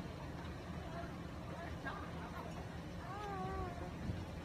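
A faint, steady low rumble, with one short, wavering, high-pitched call a little after three seconds in.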